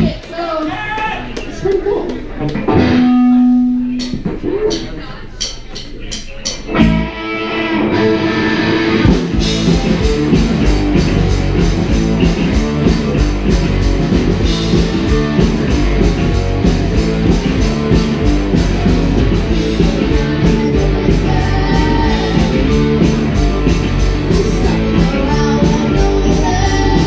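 Live rock band with electric guitars and drum kit: a few seconds of scattered guitar notes and a held tone, then sharp drum and cymbal hits, and about nine seconds in the full band starts playing with a steady beat.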